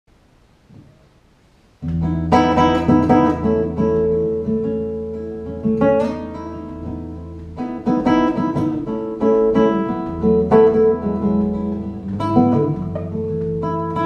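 Godin Multiac Grand Concert Duet Ambiance electro-acoustic guitar played through an AER Domino 3 acoustic amp, improvised: after nearly two seconds of quiet, plucked chords and single notes ring over held deep bass notes. The sound is picked up through a GoPro's built-in microphone.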